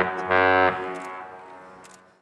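Ship's horn of the 1,000-foot Great Lakes freighter Edgar B. Speer sounding a salute in short blasts: one blast ends right at the start, another short deep blast follows about a third of a second in, then the tone echoes away, fading over about a second and a half.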